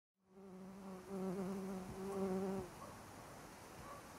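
A bee buzzing in flight, a steady low hum that grows louder about a second in and cuts off suddenly about two and a half seconds in, leaving only faint background ambience.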